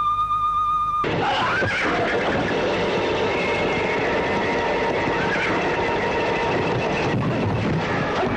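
Film soundtrack: a held, wavering high musical note cuts off abruptly about a second in. A loud, busy mix of score and action sound effects takes over, with horses neighing amid the din.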